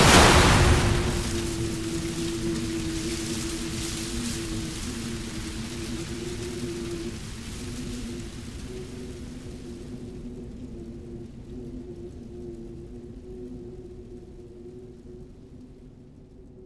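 Animated-film explosion sound effect: a loud blast at the start that dies away in a long fading rumble over several seconds, under a held low music drone that fades slowly.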